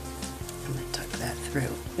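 Soft crackly rustling of acrylic yarn being pulled through the fingers and the crocheted piece being handled, close to the microphone, over faint background music.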